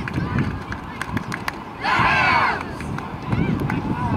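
Boys of a junior football team singing their victory song together, with a loud group shout about two seconds in.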